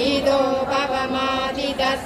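A group of mostly women's voices chanting Sanskrit devotional verses in unison, on a nearly level pitch with short breaks between syllables.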